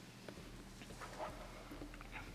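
Faint church room tone with a few soft clicks and knocks, and a brief faint squeak a little over a second in.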